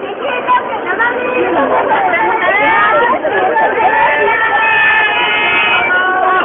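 Dense crowd chatter: many people talking at once, voices overlapping. A single pitched call is held for about a second near the end.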